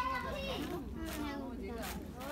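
Children's voices: chatter and calls of children playing, over a low steady background rumble.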